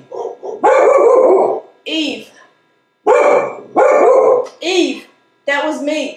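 A pet dog barking repeatedly in loud separate barks, about seven of them, one drawn out for about a second.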